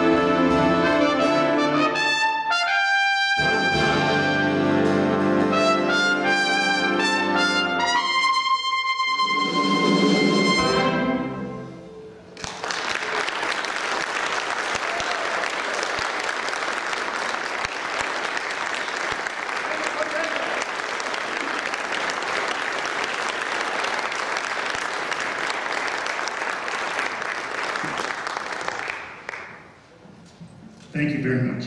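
Big band brass and full ensemble playing a run of loud closing chords, the last one held and cut off about eleven seconds in. After a short pause, audience applause follows and fades near the end.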